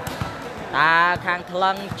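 A few sharp thuds of a volleyball being struck during play, clustered in the first half second with another later on, under fast continuous commentary.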